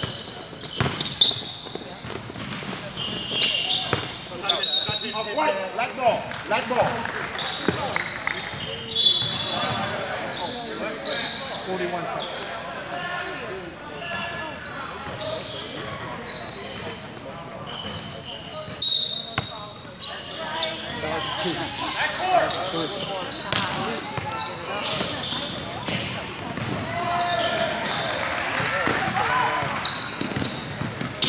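Indoor basketball game sounds in a large, echoing gym: a basketball bouncing on a hardwood court, players and spectators calling out, and two short, loud, high-pitched squeaks, about five seconds in and near nineteen seconds.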